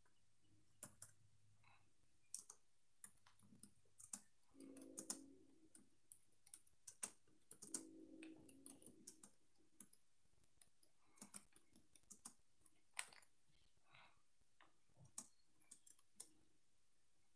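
Faint, irregular clicks and taps of typing on a device, with two short low hums about five and eight seconds in.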